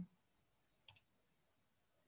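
Near silence, broken by one computer mouse click about a second in, picking Run from the menu to start the program.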